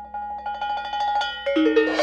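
Solo multi-percussion playing: a fast tremolo of mallet strokes on a ringing pitched instrument, swelling in loudness, then a few lower ringing notes about one and a half seconds in, and a cymbal crash starting right at the end.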